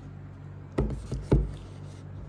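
Two handling thumps from a part-leather hardcover book being set down on its cloth slipcase, about half a second apart, the second louder, over a steady low hum.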